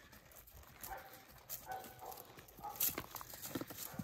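A horse walking on a dirt round-pen floor: an uneven series of hoof falls.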